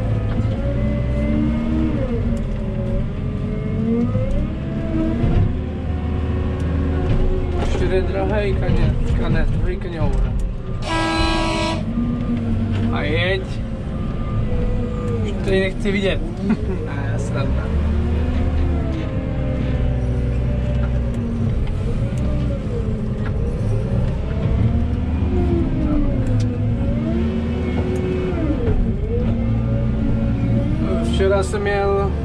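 JCB telehandler's diesel engine, heard from inside the cab, revving up and down as its hydraulic boom works a manure grab. A buzzing tone sounds for about a second midway.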